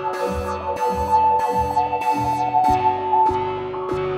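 Synthesizer chord played through a sequenced gate effect with its filter envelope set to an extreme amount. The filter opens and closes in repeating sweeps, roughly two a second, turning the sustained sound into a rhythmic pattern.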